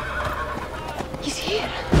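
Horses of a mounted party: a horse neighs briefly about a second and a half in, with hoofbeats, over a steady low rumble.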